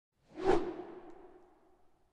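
A whoosh transition sound effect that swells to a peak about half a second in, then fades out with a lingering low ring.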